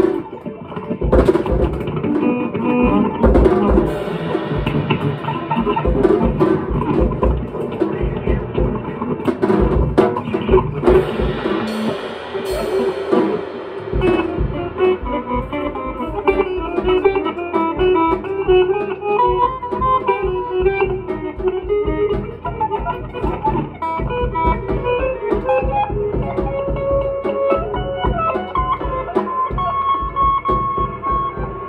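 Electric guitar and drum kit playing together live. Cymbals ring through the first half, then thin out about halfway in while the guitar carries on with held notes over lighter drumming.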